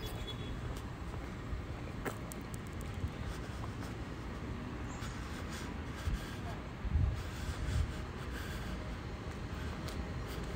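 Outdoor ambience: a steady low rumble, with a few louder low gusts of wind on the microphone about seven to eight seconds in.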